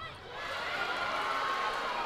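Arena crowd noise: many spectators' voices blended into a steady cheering murmur, growing a little louder about half a second in.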